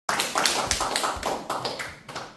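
Audience applause, the separate claps of a small crowd easy to pick out, dying away near the end.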